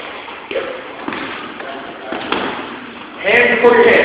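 Fists landing a few separate blows on a hanging heavy punching bag, each a short dull thud. A voice calls out loudly near the end.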